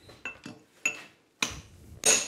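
Hammer striking a water-quenched piece of rebar held in a vise: a few sharp metallic clinks with brief ringing, about half a second apart. The quenched steel has hardened and turned brittle, and it is already cracking as it is struck.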